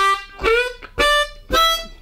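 Diatonic harmonica in C playing four short, separate notes evenly spaced about half a second apart, the second scooping up slightly in pitch. The riff is played straight on the beat, with no push or hold.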